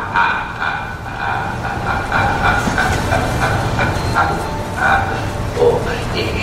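A man's slow, drawn-out laugh in short repeated bursts, over a low steady rumble.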